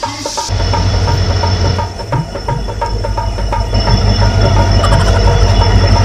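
A passenger train at a railway station platform, with a loud, steady low rumble starting about half a second in.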